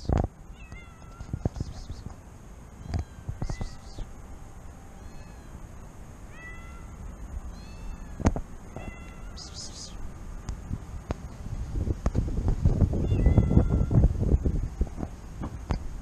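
Stray cats meowing: a series of short, high meows, one every second or two. A louder low rumbling noise swells in about twelve seconds in and fades near the end.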